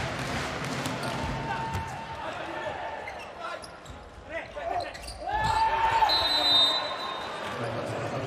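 Indoor volleyball rally: the ball slapped by hands on the serve and the hits that follow, with voices shouting in the hall. The shouting grows loudest a little past halfway.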